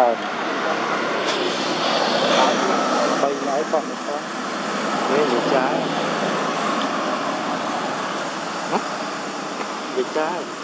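Road traffic: a vehicle passing on the road, a rush of noise that swells and fades, loudest twice. Short squeaky pitched calls are heard at a few points over it.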